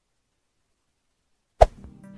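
Silence, then near the end a single sharp hit from an intro-animation sound effect, followed by a faint ringing tail.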